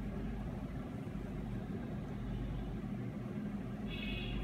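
Steady low background hum with a faint hiss, unchanging throughout, with no distinct taps or other events.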